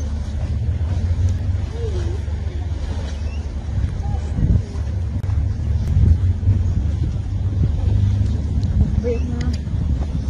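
Wind buffeting the phone's microphone as a steady low rumble, with a few faint short voices in the background.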